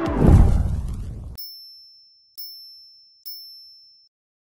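Electronic logo sting: a falling sweep over a low boom that stops sharply about a second and a half in, then three short, high dings about a second apart, each fading away.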